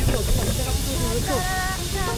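A steady hiss, with a short voice-like sound partway through.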